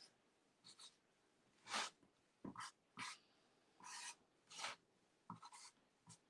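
Paint marker drawing and dabbing on a painted wooden door hanger: about eight short, faint, scratchy strokes, irregularly spaced.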